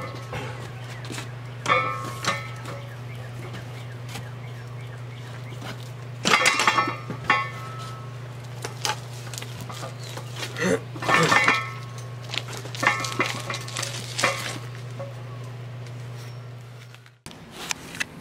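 Clanks and rattles of a steel welding cart and its gas cylinder as the cart is wheeled over rough ground, in several bursts, with a ringing metallic tone on some hits. A steady low hum runs under it and cuts off suddenly near the end.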